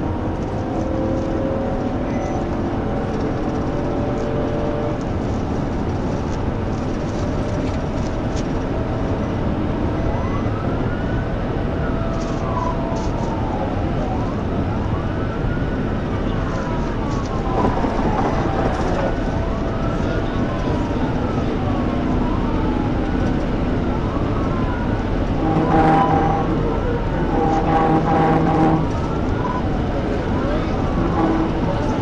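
Police cruiser at high speed, heard from inside the car: steady engine, tyre and wind noise. About ten seconds in, its siren starts wailing, rising and falling in pitch over and over. Near the end come a few short steady tones.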